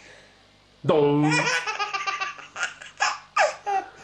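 A baby laughing hard: quiet at first, then a loud burst of laughter about a second in, a quick run of laughs, and several short breathy bursts near the end.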